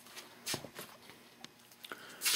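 Faint handling noise: a few light clicks and knocks as a wooden model airplane fuselage is moved about by hand.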